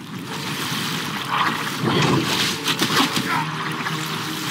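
Running water rushing and splashing, a steady wash of noise that grows a little louder about a second in.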